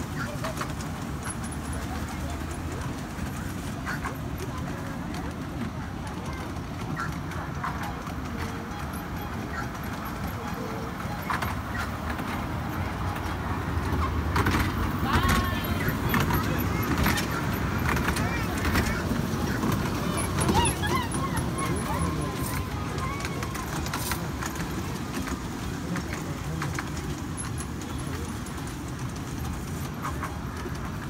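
A small kiddie ride train running on its track, a steady low rumble with children's voices chattering over it, louder for a while in the middle.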